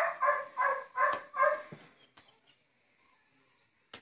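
A dog barking five times in quick succession, short sharp barks about 0.4 seconds apart, stopping after about two seconds.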